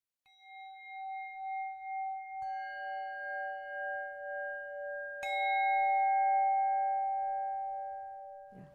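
Singing bowls struck three times, about two and a half seconds apart, each at a different pitch. Each stroke rings on with a slowly wavering hum, and the tones overlap as they fade.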